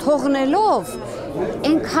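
Only speech: a woman talking in an interview, with short pauses between phrases.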